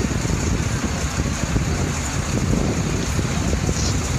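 Fire engines running at a fire scene: a steady low rumble, with wind buffeting the microphone.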